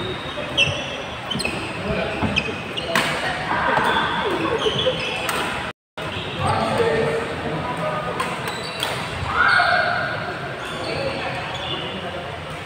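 Badminton rackets striking shuttlecocks in quick clicks, with shoes squeaking on the court floor and players' voices, all echoing in a large hall. The sound cuts out completely for a moment about six seconds in.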